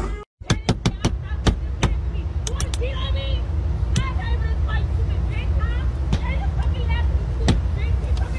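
Pit bull whining in short high squeaks over a steady low rumble, with a few sharp clicks in the first two seconds.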